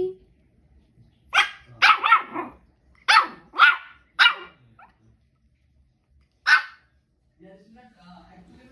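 A two-month-old Shih Tzu puppy giving its first barks: short, high-pitched yaps, about seven in a quick run, then one more after a pause.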